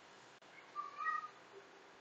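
One brief high-pitched animal call, like a cat's meow, about a second in, over faint room tone.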